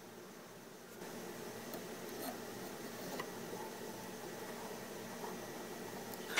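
Faint steady room hiss that steps up slightly about a second in, with a few soft clicks.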